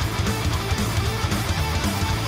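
Heavy metal band playing live: electric guitar over drums with quick, steady low thumps, at a steady loud level throughout.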